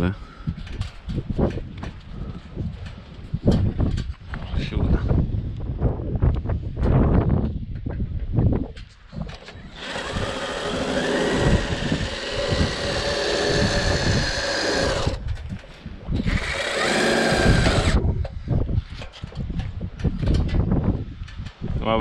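Cordless drill-driver running in two bursts, one about five seconds long starting about ten seconds in and a shorter one a second later, driving small self-drilling screws ('pchełki') into the metal gutter fittings. Knocks and clatter of handling tools and parts come before the drilling.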